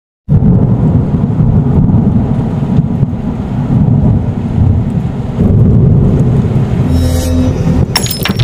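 Loud, deep thunder-like rumble sound effect for an intro logo. It starts abruptly and holds steady, and near the end a low ringing tone and a glassy high shimmer join in.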